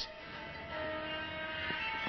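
Background music: a soft sustained chord of several held tones, filling out about two-thirds of a second in.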